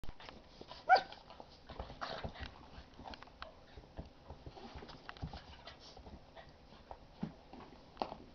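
Two young dogs, an English bulldog puppy and a basset hound–pug cross, play-fighting: one sharp, high yelp about a second in, then scuffling and quick clicks of paws and bodies on the floor.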